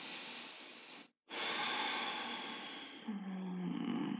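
Baby monitor speaker hissing with static while it relays a small child's sounds. The hiss cuts off abruptly for a moment about a second in, then returns, and a child's voice comes through near the end.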